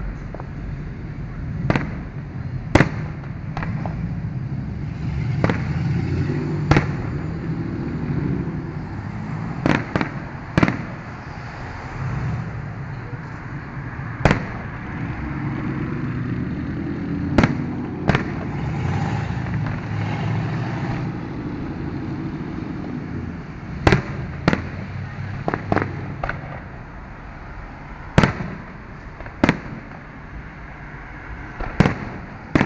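Aerial fireworks shells bursting, more than a dozen sharp booms at irregular intervals, some in quick pairs, over a steady low background rumble.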